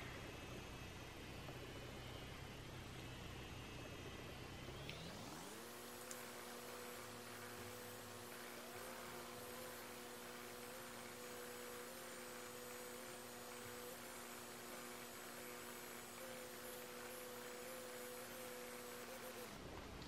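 Faint electric hum of a Foreo Bear microcurrent facial device running with its T-Sonic pulsations on. About five seconds in, a low hum gives way to a higher steady hum. That hum cuts off shortly before the end, as the treatment cycle finishes and the device switches itself off.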